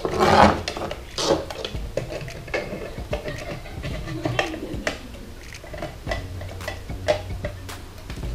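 A plastic hang-on-back aquarium filter being handled and hung on the rim of a glass tank: scattered clicks and knocks of plastic against glass.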